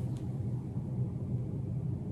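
Steady low background rumble, with one faint short click just after the start.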